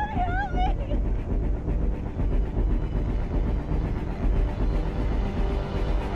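Low, dense droning film score. In the first second a high, wavering voice glides up and down over it.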